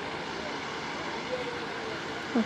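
Steady background din of a busy shop floor, an even murmur and rumble with no distinct events, and a faint distant voice about a second and a half in.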